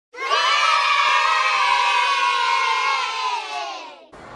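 A group of children shouting together in one long cheer that drifts slightly down in pitch and fades out near the end.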